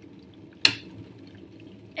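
Stainless-steel electric kettle's switch clicking off once, sharply, about two-thirds of a second in, as the water comes to the boil, over the faint rush of the boiling water.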